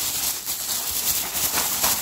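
Thin plastic carrier bag crinkling and rustling as it is shaken and tipped upside down, with snack packets and a small plastic jar dropping out onto a soft quilted bedspread.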